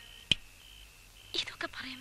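A single sharp click, then a person whispering in the second half.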